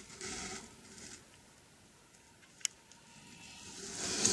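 Faint rustling of plastic wrap on fireworks battery packs being handled, in two short bursts near the start, with a single sharp click a little past the middle.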